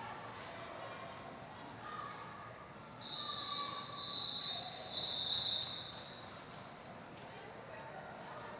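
Referees' whistles blown in several long blasts from about three seconds in, lasting about three seconds: the signal that the roller derby jam is over. Low hall background with faint taps of skates on the floor.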